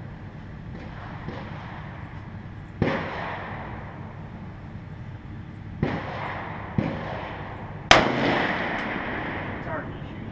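M1 Garand rifle firing in slow semi-automatic shots a few seconds apart, each a sharp crack with a short echo, the loudest about eight seconds in; fainter shots fall between them. A brief high ring follows about a second after the loudest shot.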